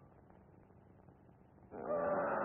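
Steady hiss of an early sound-film soundtrack, then near the end a loud, wavering pitched note begins.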